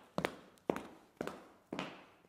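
Footstep sound effects of a character walking: four sharp, evenly spaced taps, about two a second.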